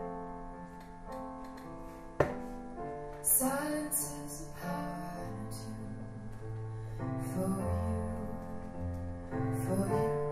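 Live keyboard with a piano sound playing slow sustained chords, joined by a woman's singing voice from about three seconds in. A single sharp click about two seconds in.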